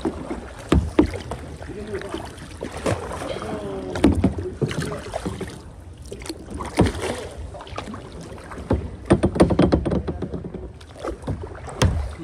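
Tandem kayak being paddled: paddle blades dipping and splashing in the water, with scattered sharp knocks through the strokes.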